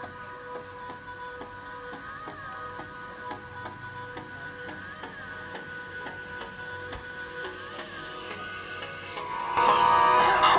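Electronic dance music playing quietly from a smartphone's small built-in speaker, with an even beat and steady synth tones. Shortly before the end it becomes much louder and fuller as the phone is set into a homemade toilet-paper-tube amplifier.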